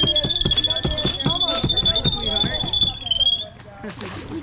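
A long, steady high-pitched whistle held for about four seconds, dipping slightly in pitch just before it stops near the end, over people talking.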